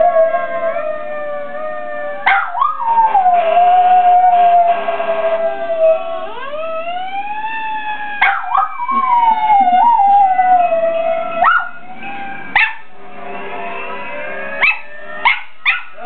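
A dog howling in long drawn-out howls that rise and fall in pitch, broken several times by short sharp yelps.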